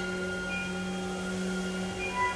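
Chamber orchestra holding a quiet, unchanging chord of sustained tones: one low note with several thin, high held pitches above it, over a faint airy hiss.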